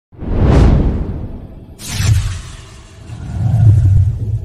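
Cinematic logo-reveal sound effects: a swelling whoosh over a deep rumble, a sharp second whoosh hit a little under two seconds in, and a low rumbling swell building again near the end.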